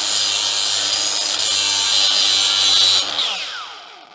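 Angle grinder grinding the pitting out of a rusty steel lawn mower blade, a steady loud whine with dense grinding noise. About three seconds in it is switched off and the disc spins down with a falling whine.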